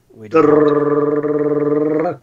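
A person's voice imitating a drum roll: a long rolled 'rrrr' trill held at one pitch for nearly two seconds.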